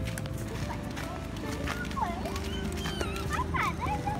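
Young children's high-pitched excited voices and squeals, gliding up and down in pitch about two seconds in and again near the end, over a steady low rumble of wind on the microphone.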